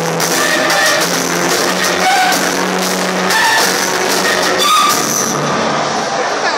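A live band playing loudly through a concert PA, heard from the audience.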